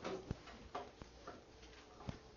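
Quiet room with a few light, irregular clicks and taps, the sharpest about a third of a second in.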